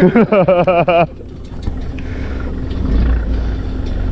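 Small fishing ferry's engine running as the boat pulls away from the breakwater, its low rumble swelling about three seconds in. A voice calls out during the first second.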